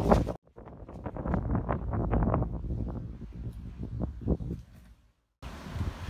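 Wind buffeting the microphone in irregular gusts, with the sound cutting out to silence briefly near the start and again near the end.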